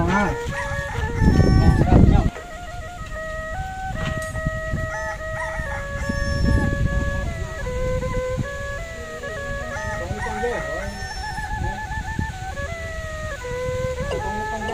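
Music: a melody of held notes with quick trills, played on a wind instrument in a traditional style. A loud low rumble covers the first two seconds and then stops suddenly.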